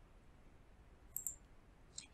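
Near silence with a single short click of a computer mouse button a little over a second in.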